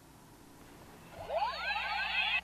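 Handheld speed gun sounding as it is aimed: a cluster of overlapping rising electronic sweeps starting about a second in, over a faint steady low hum.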